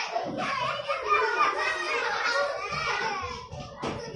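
Many primary-school children chattering and calling out over one another in a classroom, a dense overlapping babble of young voices. A single sharp knock comes near the end.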